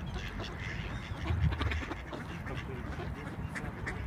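Mallard ducks on the water quacking and calling in a scattered, overlapping chorus, with a brief low rumble about a second and a half in.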